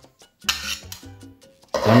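A knife blade scraping minced garlic across a wooden cutting board onto a plate: a short rasp about half a second in, over quiet background music.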